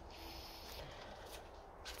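Quiet, steady background with a faint low hum and hiss. No distinct sound stands out.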